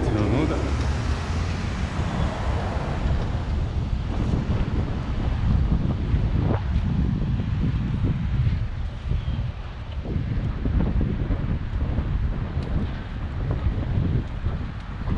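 Wind buffeting a moving camera's microphone: a heavy, fluctuating low rumble that rises and falls in gusts, easing for a moment about two-thirds of the way in.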